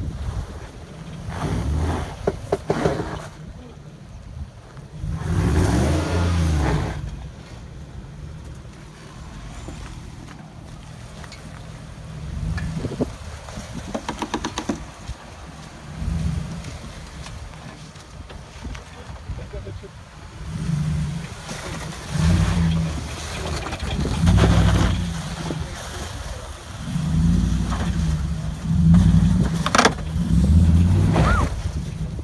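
Jeep Wrangler TJ engine revving up and down in repeated bursts as it crawls through axle-twister dips, with wind buffeting the microphone.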